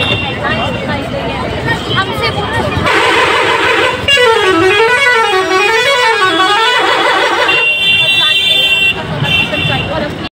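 A bus passing close by sounds a warbling musical horn starting about four seconds in, its pitch sweeping up and down three times over roughly three seconds, over road traffic noise.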